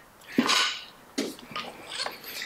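Two short breath sounds from a person, a sharp one about half a second in and a fainter one about a second later.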